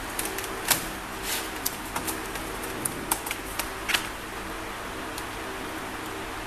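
Laptop keyboard being handled, its keys and plastic frame giving scattered light clicks and taps through the first four seconds, over a steady background hum.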